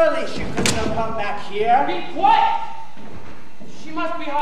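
A single sharp slam about half a second in, followed by voices calling out.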